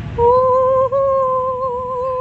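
A person humming one long high note that starts a moment in and wavers slightly near the end.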